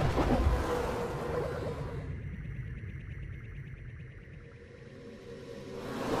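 Logo outro sting: a sudden loud synthesized rush with a deep rumble, slowly fading and then swelling again near the end.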